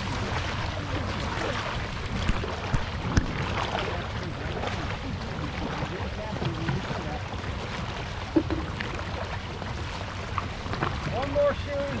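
Dragon boat paddles stroking through calm water at an easy pace, under a steady rush of wind on the microphone, with a few sharp knocks and faint voices from the crew.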